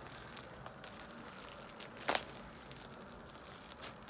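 Plastic wrapping around a pack of yarn skeins crinkling as it is pulled open by hand, with scattered small crackles and one sharper snap about halfway through.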